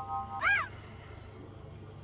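A synthesized tone of a few steady notes ends about half a second in, followed by a short meow that rises and falls in pitch. Then only a low hum remains.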